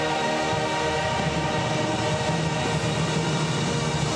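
Live church worship music: singers and band holding long, sustained chords, with one chord change about a second in.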